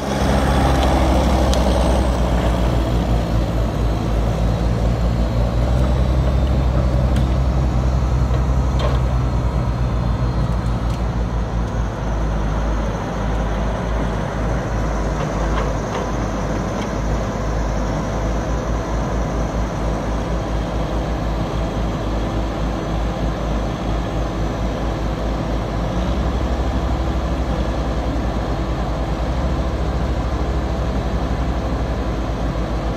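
Heavy diesel engines of logging machines, a 648E skidder and a Deere knuckleboom log loader, running loud and steady, with the low engine note changing about twelve seconds in and again near the end.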